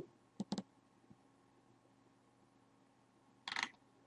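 Computer mouse clicking: a quick few sharp clicks about half a second in, then faint room tone, and a short hissy burst near the end.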